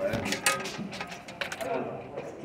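A run of sharp clicks and ticks, as of a small mechanism or objects being handled, with faint voices in the background.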